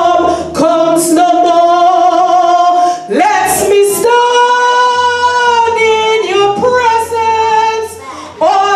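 A woman singing solo into a handheld microphone, holding long sustained notes with short breaths between phrases.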